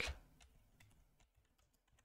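Faint computer keyboard typing, a scattered run of soft key clicks.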